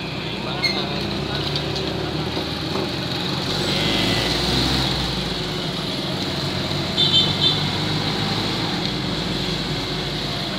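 Several motorcycle engines running at riding speed, with road and wind noise that swells about four seconds in. Three short high tones sound about seven seconds in.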